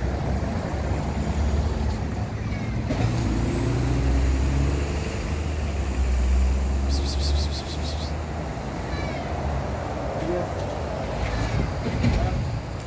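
Steady low rumble of a nearby vehicle engine running, with a cat meowing a few times.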